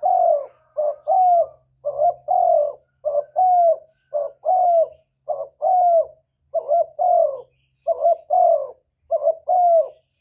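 Spotted dove cooing over and over, about one phrase a second, each phrase a short coo followed by a longer, falling coo.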